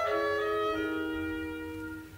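Opera orchestra holding a sustained chord of steady notes, led by wind instruments; the chord changes about two-thirds of a second in and fades away toward the end.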